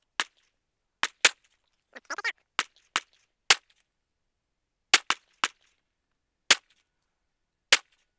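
Five slow, deliberate pistol shots, spaced about one and a half seconds apart, from a new shooter firing for accuracy. Quieter sharp cracks fall in between, and a short voice is heard about two seconds in.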